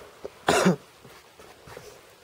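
A person coughs once, a short sharp cough about half a second in.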